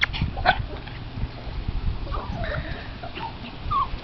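Small dogs giving a few short whimpers and yips as they play, over a steady low rumble.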